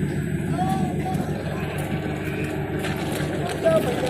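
Diesel engine of a DEMU (diesel-electric multiple unit) train idling steadily at a standstill, with people's voices calling out over it.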